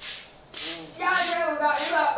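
Short handheld broom sweeping concrete paving stones in quick scratchy strokes, about two a second. A person's voice joins about a second in.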